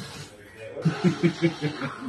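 Laughter: a run of short, rhythmic chuckles, about six a second, starting just under a second in.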